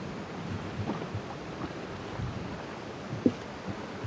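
Wind buffeting the microphone over choppy water lapping around a small dinghy drifting with its outboard stopped, with one sharp knock a little past three seconds in.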